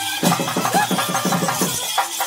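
Traditional procession music: fast drum strokes, about six or seven a second, under a bright jingle of metal bells and rattles, with a pitched line sliding above.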